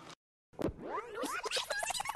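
About half a second of silence, then a sharp hit and a dense flurry of quick rising and falling squeaky pitch glides, like a record-scratch sound effect.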